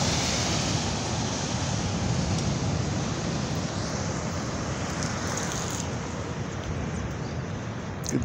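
Steady outdoor noise of surf and road traffic, an even wash with no distinct events.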